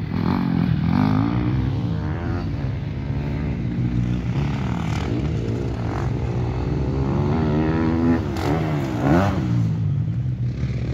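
Motocross dirt bike engines revving hard and dropping back through the gears, the pitch climbing and falling again and again. Near the end two engines are heard at once, their pitches crossing.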